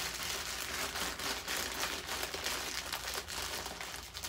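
Continuous crinkling and rustling of packaging being crumpled and handled, a dense run of small crackles.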